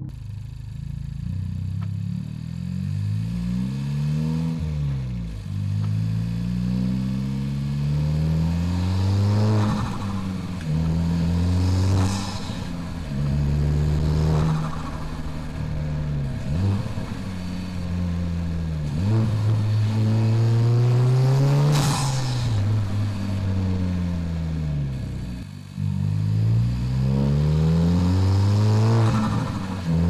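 Honda Civic Type R (FK8) turbocharged 2.0-litre four-cylinder pulling hard through the gears, its pitch rising and then dropping at each of several upshifts, picked up by a microphone near the front of the car for the intake sound. Short bursts of noise come at two of the shifts.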